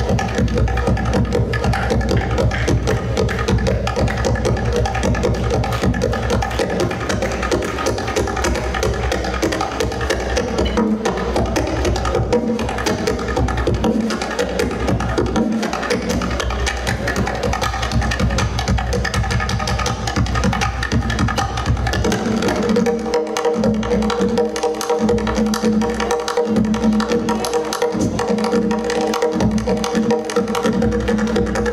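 Solo tombak (Persian goblet drum) played with rapid finger strokes and rolls. About 22 seconds in, the deep bass strokes thin out and the playing turns to lighter, more spaced strokes with a ringing tone.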